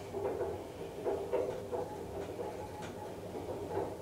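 Passenger lift travelling downward: a low steady hum from the lift's drive and cab, with a few faint clicks and rattles.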